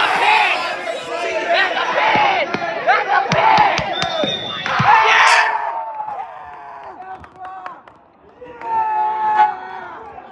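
Spectators shouting and cheering, urging on a wrestler who is holding his opponent in a pin. Many voices yell over one another for the first five seconds, then the shouting dies down, with another burst of voices near the end.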